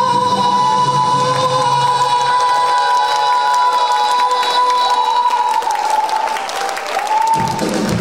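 Male sorikkun (Korean traditional singer) holding one long, high note at a climax of the song, backed by a Korean traditional orchestra. The note breaks off about five seconds in into shorter sliding vocal phrases.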